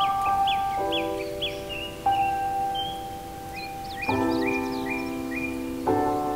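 Solo piano playing slow, sustained chords, a new chord struck every second or two, over recorded birdsong of short high chirps in quick series.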